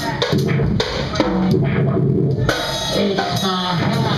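Live band of drum kit, guitar and didgeridoo playing, the drum kit loudest, over a low steady drone and pitched guitar notes that slide.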